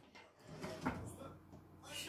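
A large frying pan set down and shifted on a gas hob's grate: a faint scrape and a light knock about a second in, with faint voices in the room.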